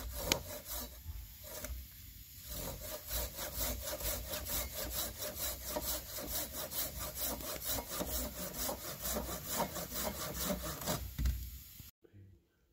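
Hand saw cutting through a short wooden log in quick, steady back-and-forth strokes, a few each second. A couple of separate strokes come first, then continuous sawing from about two seconds in, stopping just before the end.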